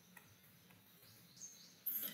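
A quiet pause: faint steady low hum, a faint tick just after the start, and a short, sharper click-like sound near the end.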